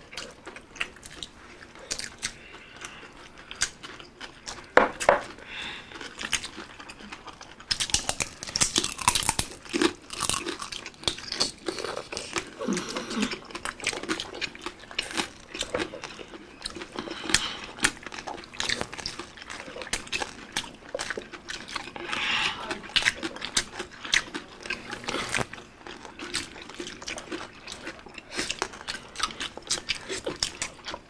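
Several people chewing and biting into crispy deep-fried pork belly (bagnet) with its crackling skin, an irregular run of wet chewing and sharp crunches, with louder bursts of crunching around a third of the way in and again later.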